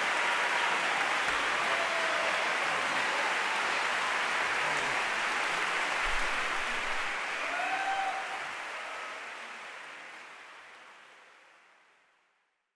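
Audience in a concert hall applauding steadily, the applause fading out over the last few seconds.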